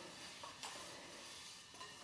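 Faint sounds of soft shortbread dough being gently pressed into a ball by hand in a glass mixing bowl, with a few light taps against the bowl.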